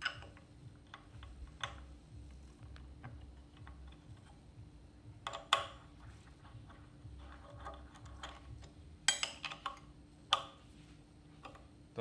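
Scattered small clicks and taps of a metal screw and hex key against the lid of a Crayfish 60 turntable as the lid is seated and its centre screw is driven in, with a few sharper knocks about five and a half and nine seconds in.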